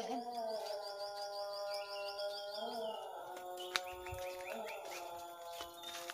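A bird singing: a rapid trill of high chirps for the first half, then a slower run of short falling notes. Sustained tones of background music run underneath, and there is one sharp click a little past the middle.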